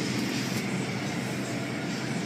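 Steady whooshing machine noise from car wash equipment, holding even throughout with no distinct strikes or changes in pitch.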